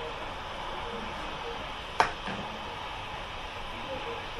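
Steady road and tyre noise inside a car cruising at about 90 km/h, with one sharp click about halfway through.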